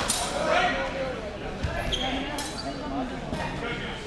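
A longsword exchange between fencers: a sharp crack at the very start and another a little over two seconds in, with a thud between them and voices calling out.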